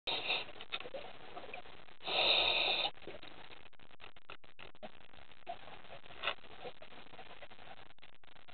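Underwater reef ambience picked up by a camera: a steady low hiss with scattered faint clicks and crackles. There is one louder rush of noise lasting just under a second, about two seconds in.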